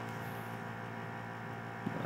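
Faint steady electrical hum, a buzz of many fixed tones that does not change.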